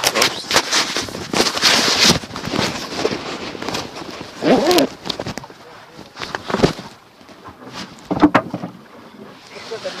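Knocks, clatter and splashing from a wooden rowing boat being rowed, with oars working in the water. A short call is heard about four and a half seconds in, and there are sharper knocks near the end.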